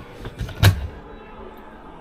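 Tall storage cabinet door in an RV truck camper being opened: a sharp click or knock of the latch and door about two-thirds of a second in, with a lighter tap just before.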